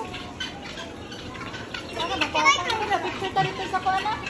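Children's voices and background chatter, quieter for the first half and busier from about halfway through, with a brief high excited voice.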